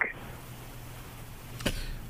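Faint steady hiss of a telephone line with a low hum under it, and a brief click near the end.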